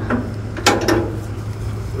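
A single sharp mechanical clunk about two-thirds of a second in, over a steady low engine hum.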